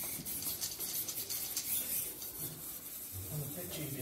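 Small wheeled robot driving across the arena board with a barrel in its gripper: a steady rasping rub of its drive motors and wheels, crossed by fine ticks.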